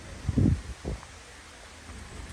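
Wind rumbling on the microphone outdoors, with two brief low bumps in the first second, the first the louder.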